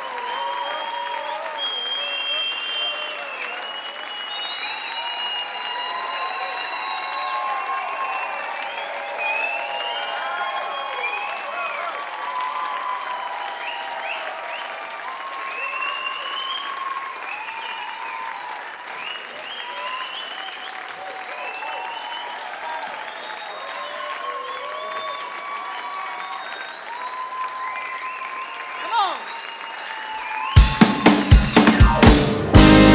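Concert audience applauding steadily, with many voices cheering and calling out over the clapping.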